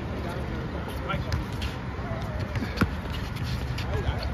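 Basketball game on an outdoor court: a steady low rumble with faint voices, and a few sharp knocks of the ball on the court, the clearest about three seconds in.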